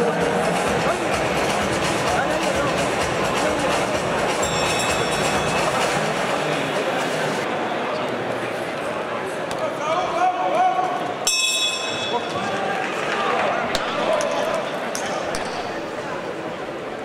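Steady arena crowd chatter and shouting with background music. About eleven seconds in, a single sharp strike of the boxing ring bell rings on for a moment, signalling the start of the round.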